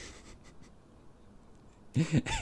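Quiet room tone: a faint, even rustling hiss with no music or voice, the tail of the trailer's music fading out at the very start.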